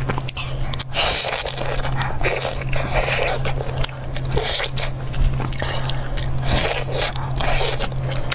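Eating sounds: biting, tearing and chewing sticky, sauce-glazed braised meat on the bone, in irregular repeated bursts over a steady low hum.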